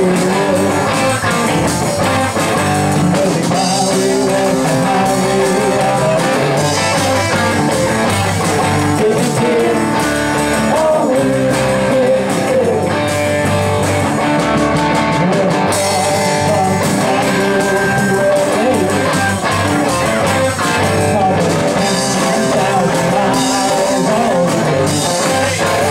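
A live rock and roll band playing: electric guitars over a drum kit, with a steady beat.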